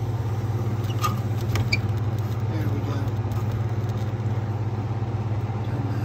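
Refrigeration compressor of a drinking fountain's water cooler running with a steady low hum, and a few faint clicks over it.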